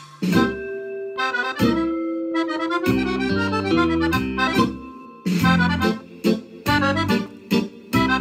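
Cooperfisa piano accordion playing a mazurka: a melody opens after a brief gap, and the left-hand bass and chords join in about three seconds in.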